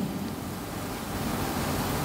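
Steady, even hiss of background noise with no distinct events.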